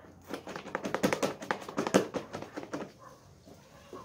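A stopped electric hand mixer's metal beaters being knocked and worked clean of thick homemade soap over a plastic bowl: a fast, irregular run of sharp clicks and taps that stops about three seconds in.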